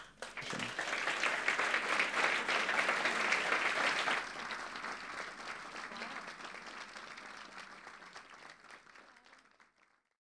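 Audience applauding at the end of a talk. The clapping builds within the first second, drops suddenly about four seconds in, then fades out just before the end.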